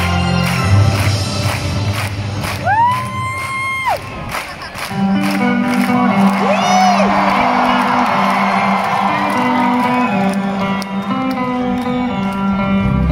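Live band playing on stage, with electric guitar, bass and drums, while the crowd cheers. High whoops glide up and back down about three seconds in and again about seven seconds in.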